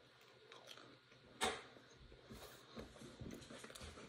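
Faint chewing of a bite of air-fried mini pizza with a crunchy crust, with one sharper crunch about a second and a half in.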